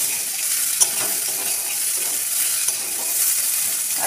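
Chickpeas frying in oil in a metal wok, sizzling steadily while a metal spatula stirs and scrapes them. The spatula clicks sharply against the pan twice, near the start and about a second in.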